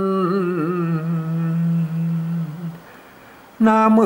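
A man singing a northern Thai khao joi verse, holding a long, slightly wavering note on the line's last word, บ้าน, which fades out a little under three seconds in; after a short pause the next line begins near the end.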